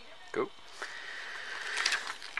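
Plastic Blu-ray case handled and moved, a rustling, scraping noise that grows louder toward the end, after a brief vocal sound about half a second in.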